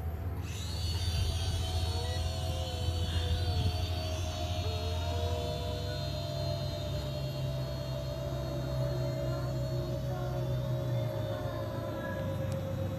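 Small toy quadcopter drone's motors and propellers whining steadily as it lifts off and flies overhead. A higher whine comes in about half a second in, and the pitch wavers and shifts with the throttle.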